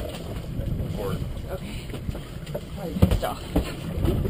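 Wind buffeting a boat-mounted action camera's microphone over a steady low rumble, with faint voices. Two heavy thumps come about three seconds in.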